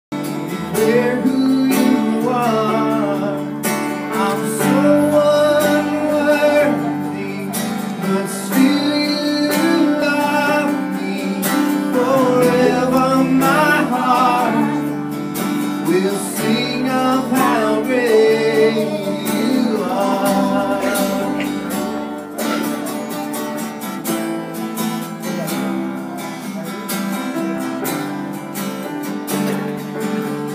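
Live worship song: strummed acoustic guitar and electric bass under a sung melody. The singing drops out about 22 seconds in, leaving the guitar and bass playing on.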